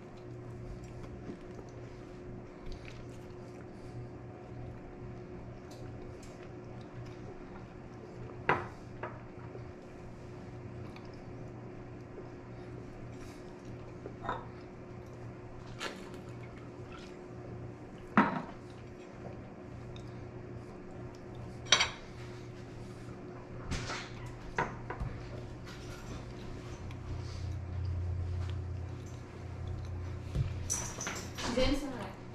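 Sharp clinks and knocks of dishes and a glass bottle being handled on a kitchen counter, about seven of them a few seconds apart, over a steady low hum. A soft low rumble comes near the end.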